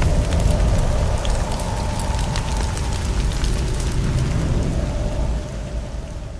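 Sound effect for a logo reveal: a deep rumble with a dense crackle of sparks, like a fire, fading out near the end.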